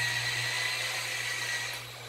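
Handheld electric polisher running with a steady whine over a low hum, buffing the sanded paint of a car-body mold plug; the sound fades away near the end.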